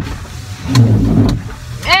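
A car's windscreen wiper motor running, a low hum that rises and falls with each sweep in a steady rhythm, about one sweep every second and a half; the wipers have been switched on by mistake.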